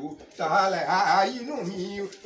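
A man singing unaccompanied, one phrase with held, bending notes starting about half a second in.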